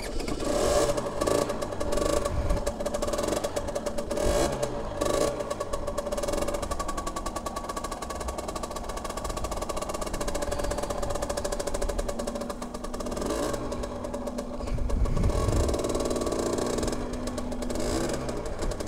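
Aprilia motorcycle engine running as the bike pulls away and rides slowly, its revs rising and falling several times.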